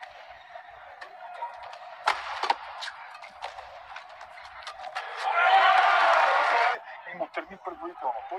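Badminton racket strikes on a shuttlecock, sharp cracks a few times a second during a rally, over arena hall noise. About five seconds in the crowd erupts in cheering, which cuts off suddenly at an edit.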